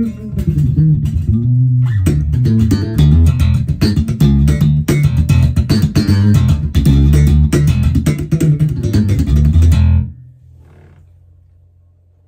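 Crews Maniac Sound DHB 5 five-string electric bass with twin Music Man-style humbucking pickups, played fingerstyle in a busy line of quick plucked notes. The playing stops about ten seconds in, and the last note fades away.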